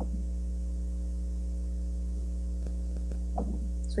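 Steady low electrical hum made of several constant tones, in a pause between spoken words; a faint brief sound comes about three and a half seconds in.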